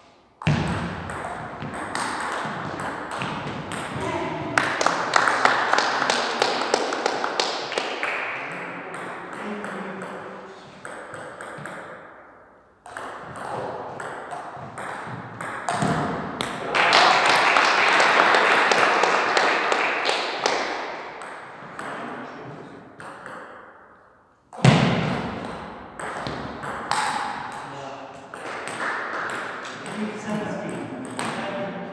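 Table tennis ball clicking back and forth off paddles and table during rallies, with voices in the background.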